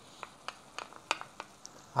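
Chopped onion being scraped from a glass bowl with a wooden spoon into a pan of browned minced meat: faint light clicks and taps, about half a dozen spread through.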